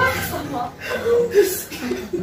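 A small group of people chuckling and laughing together, with some talk mixed in.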